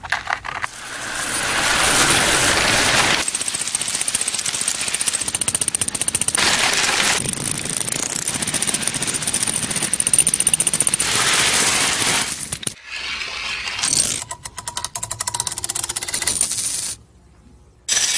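Coins clattering and rattling in a rapid, dense stream that changes character every few seconds, then breaks off about a second before the end.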